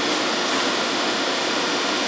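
Steady, loud rushing noise of elevator machine-room machinery around Otis elevator machines, even and unbroken with no distinct beats or tones.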